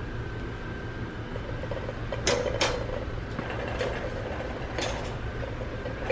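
Shopping cart rolling along a store aisle: its wheels and frame rattle, with a few short clicks and knocks, over a steady background hum.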